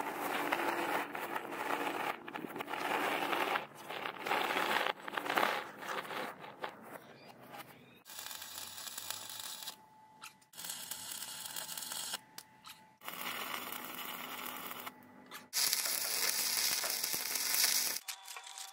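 Sped-up recording of steel fabrication, cut into short segments: a steel frame being moved, then electric arc welding.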